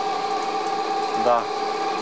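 Electric motor driving a generator converted from a 0.75 kW water-pump motor, with a 9 kg flywheel on the shaft, running at a steady speed: an even machine hum with a steady whine of several pitches.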